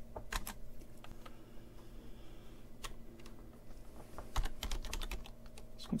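Computer keyboard being typed on: scattered keystrokes, with a quick run of several about four and a half seconds in, over a faint steady hum.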